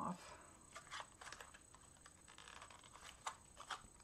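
Faint, scattered small clicks and light rustling as thin metal cutting dies are pried off their paper backing sheet with the fingers.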